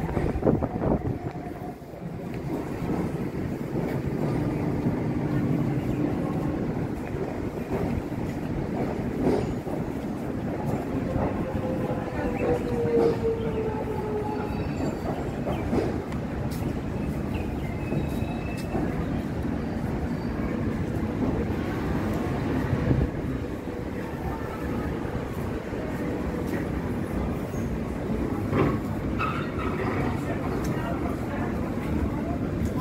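Melbourne suburban electric trains running through a large station, giving a continuous rumble of wheels on track. A short falling whine comes about halfway through.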